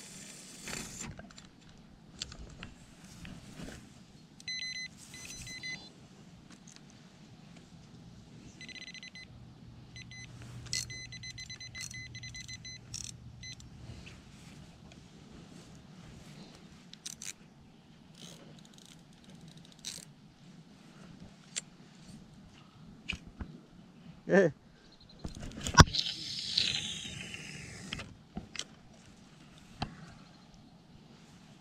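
Spinning rod and reel being handled: scattered rattles and clicks, with two spells of rapid, even ticking from the reel. Near the end come a sharp knock and a loud, falling whine.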